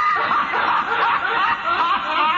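A person laughing.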